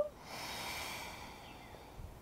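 A woman's audible breath: a soft rushing that fades away over about a second.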